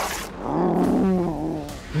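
A man's deep roar in a Hulk impression, one long growling yell starting about half a second in and lasting just over a second.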